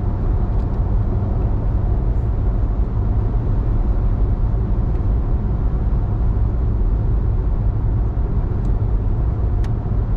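Steady low rumble of a car cruising at freeway speed, heard from inside the cabin: tyre, road and engine noise at an even level. There is a faint click near the end.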